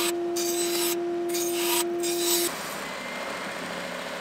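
Bandsaw cutting white-mahogany slats: a steady motor hum with the blade's rasp through the wood, in passes with short pauses between them. About two and a half seconds in, this gives way to the steadier running noise of an oscillating belt sander.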